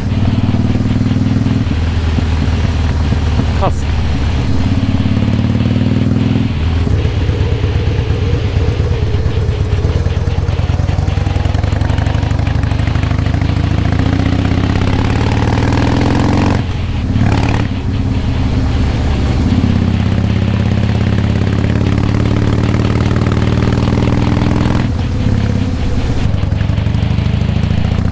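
Harley-Davidson Heritage Softail Classic's V-twin engine running under way. Its pitch repeatedly climbs under throttle and drops back, several times.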